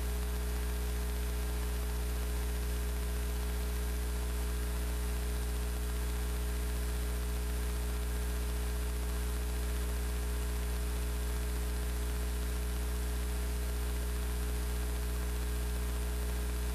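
Steady electrical mains hum with a faint hiss from the hall's open microphone and sound system, unchanging throughout.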